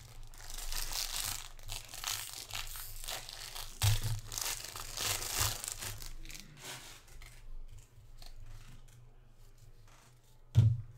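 A 2022 Topps Series 2 jumbo baseball-card pack's wrapper being torn open and crinkled by hand, with a couple of soft knocks partway through. The crinkling dies down after about six seconds, leaving quieter handling of the cards.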